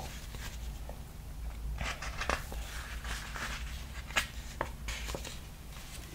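Pages of a paperback picture book being turned and handled: paper rustling from about two seconds in, with several sharp crinkles and taps.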